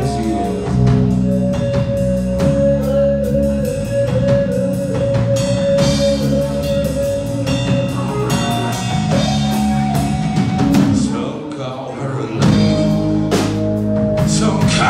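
Live band playing country rock on electric guitar, bass guitar and drum kit, with long held melody notes over a moving bass line and drum beat. The bass and drums drop out for a moment near the end, then the full band comes back in.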